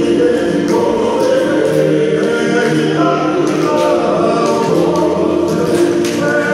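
A group of voices singing a song in harmony, with held notes that shift every second or so.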